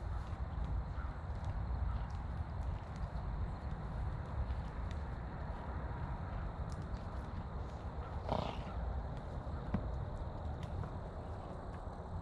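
Steady low wind rumble on the microphone, with a horse giving one short snort about eight seconds in.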